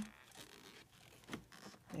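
Battery terminal clamp being lifted off the battery post: a faint scrape with two light clicks.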